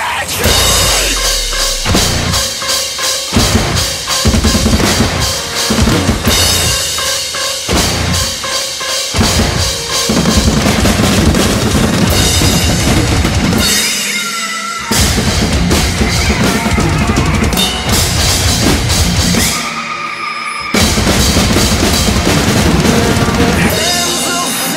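Acoustic drum kit played hard in a fast heavy-metal pattern: bass drum, snare and crashing cymbals over the song's recorded track. The low end drops out briefly twice in the second half.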